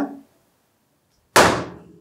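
A single sudden, loud hit with a short ringing tail about a second and a half in, after a moment of dead silence.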